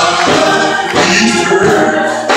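Gospel singing in church: a group of voices singing together, with live instruments behind them.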